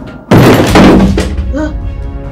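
A dramatic ominous sound effect: a sudden, very loud heavy hit, followed by a sustained deep rumble and a held low tone.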